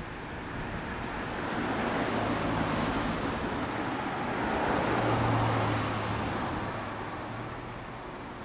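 Kawasaki ZRX1200 DAEG's inline-four engine idling through a BEET Nassert titanium full exhaust, growing louder around two seconds in and again around five seconds in, then easing.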